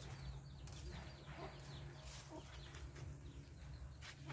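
Faint farmyard sounds: chickens clucking and many short, falling bird chirps, with a couple of brief rustles of branches being handled.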